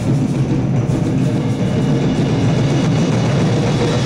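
Concert band playing, drums and percussion to the fore over woodwinds and brass.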